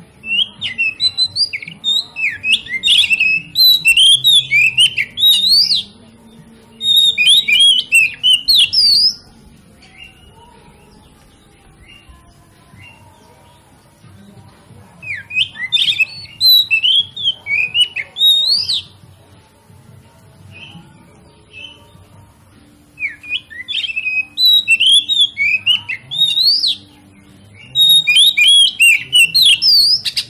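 Oriental magpie-robin (kacer) singing loud bouts of rapid, varied whistled notes that slide up and down. There are five bouts of a few seconds each, separated by pauses. This is the kind of song played as a lure (pancingan) to provoke other magpie-robins into singing.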